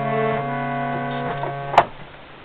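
Harmonium reeds sounding a held chord, the notes shifting slightly just after the start. A sharp knock comes near the end, and the chord stops with it.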